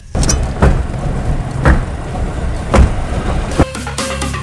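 Mahindra Scorpio SUV driving on a flat tyre that has been run without air until it is shredded, making a rough rumble with a heavy thump about once a second. Music cuts in near the end.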